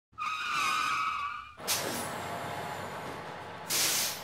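A bus's brakes squeal for about a second and a half. A sudden burst of air-brake hiss follows, then a steady running noise, and a second short hiss comes near the end.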